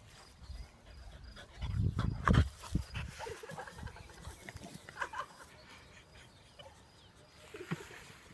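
Beagle puppy sniffing and snuffling in short irregular bursts as it noses at the grass, with a louder low rumble about two seconds in.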